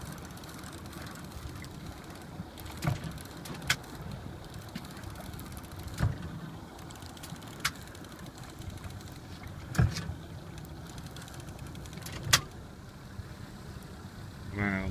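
Fishing boat's engine idling, a steady low hum, with about six sharp knocks or clicks scattered through it, the loudest near the end.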